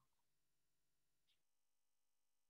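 Near silence: the audio is essentially gated out, with no audible sound.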